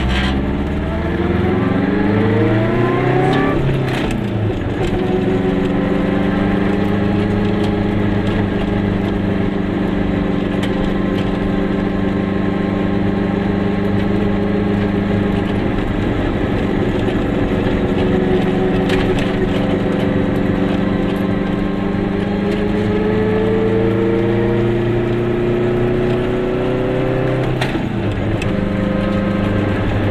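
Car engine heard from inside the cabin, rising in pitch as the car accelerates, then dropping sharply at a gear change about four seconds in. It then runs steadily at cruising speed before it rises again and drops at a second gear change near the end.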